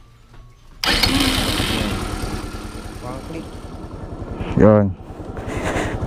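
Kymco Super 8 scooter engine starting suddenly about a second in and running with an even fast pulse, its level easing off over the following seconds. This is a test start after the carburettor's main and pilot jets were cleaned and the float and TPS adjusted to cure the engine dying when throttled.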